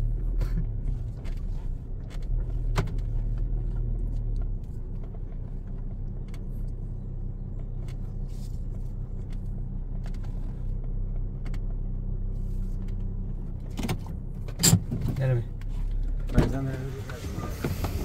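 Car engine and tyres running steadily at low speed, heard from inside the cabin as a low, even rumble over a rough dirt track, with scattered small knocks and rattles. Near the end come a couple of sharp, loud clacks.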